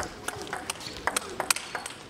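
Table tennis rally: the ball being struck back and forth off the bats and bouncing on the table, a run of sharp clicks a few each second.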